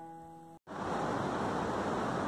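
A last veena note fades and cuts off about half a second in. It gives way to the steady rushing of a fast mountain river flowing through a rocky gorge.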